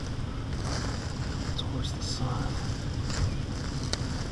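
Wind noise on the microphone: a steady low rumble with a hiss over it.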